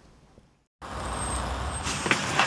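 Faint room tone, a brief dead silence, then steady road-traffic noise with a low rumble, heard from inside a car.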